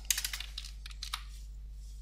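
Computer keyboard keys clicking while code is pasted into a text editor: a quick cluster of key clicks, then a couple more about a second later.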